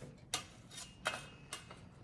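A few faint, light metallic clicks, spaced irregularly about half a second apart, as a metal offset spatula touches the wire glazing rack.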